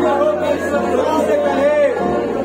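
Many voices of a church congregation, talking or singing together, over background music with held notes.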